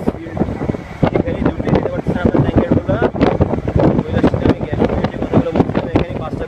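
Ride noise of a moving vehicle with wind buffeting the microphone, under people talking.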